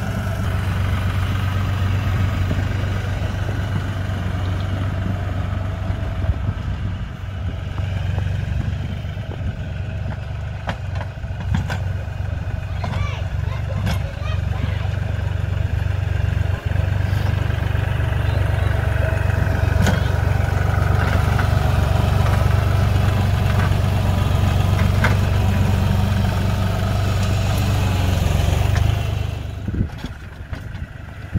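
LS MT235 compact tractor's diesel engine running steadily under load as it pushes snow with a log plow on its loader, with a few sharp knocks in the middle. The sound drops off just before the end.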